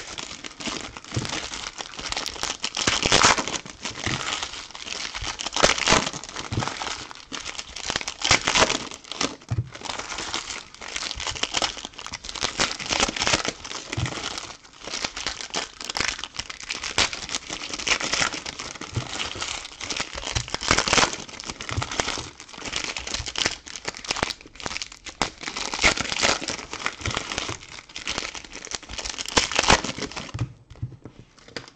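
Foil trading-card pack wrappers being torn open and crumpled by hand: a continuous crinkling with irregular louder bursts of tearing and scrunching.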